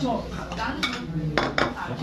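A few sharp clicks and knocks of a steel kitchen knife and utensils against a plastic cutting board, three in all, with faint voices behind.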